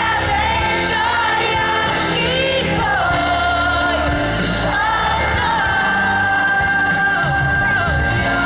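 Live pop ballad: a female lead vocalist sings over a full band through a concert PA, heard from within the audience, holding a long note over the last couple of seconds.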